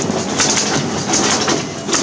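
Xerox WorkCentre 5875 office copier running a copy job, its automatic document feeder drawing the originals through with quick mechanical clicking over the machine's whir.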